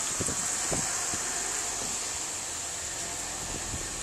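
Ford Fusion sedan idling, a faint steady hum under a constant hiss, with a few light knocks.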